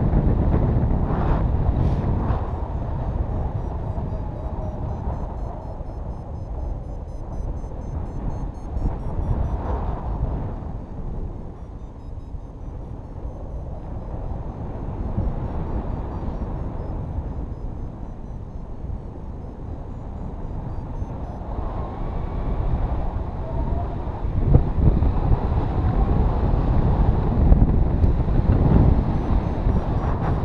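Wind rushing over a camera microphone during paraglider flight: a steady low rumble that eases in the middle and swells again in the last few seconds.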